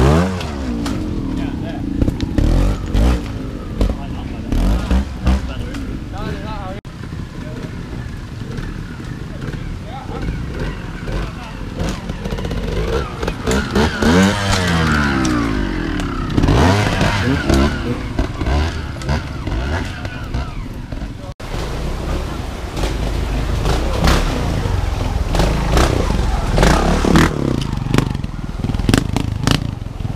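Trials motorcycle engines blipping and revving, their pitch rising and falling over and over as the bikes are ridden over rocks, with scattered knocks and clatter. The sound breaks off suddenly twice and picks up again.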